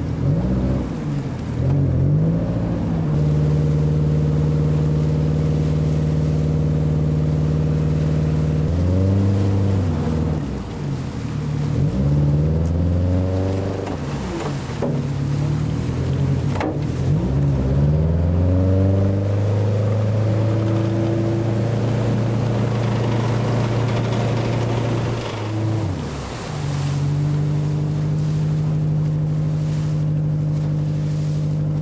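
Tugboat's diesel engine running, its pitch sweeping up and down as the throttle is worked near the start, through the middle and again near the end, and holding steady in between. Propeller wash churns the water under the engine.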